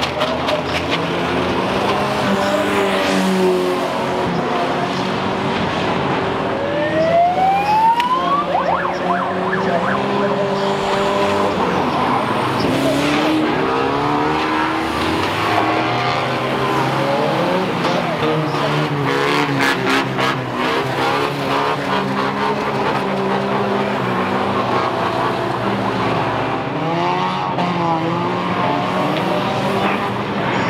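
Engines of several banger-racing vans running and revving at changing pitches as they race past. One engine revs up sharply about seven seconds in.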